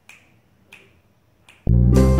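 Three finger snaps in a slow, even rhythm, about two-thirds of a second apart. Near the end, loud music with a deep, heavy bass starts abruptly and becomes the loudest sound.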